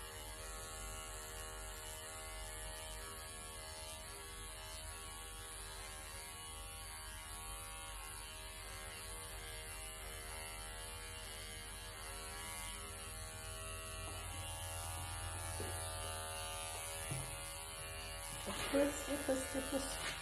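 Cordless electric pet clipper running with a steady hum as it trims a Persian cat's coat.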